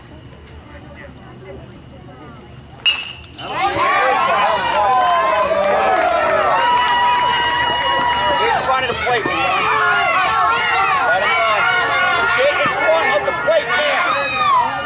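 A bat hitting a baseball with one sharp crack about three seconds in, followed by many spectators and players yelling and cheering over each other, with some long drawn-out shouts.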